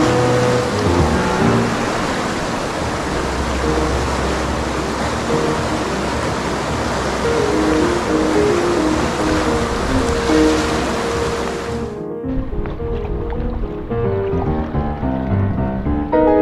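Steady rushing of whitewater in a river rapid, heard under background music. About twelve seconds in, the water noise cuts off abruptly and only the music goes on.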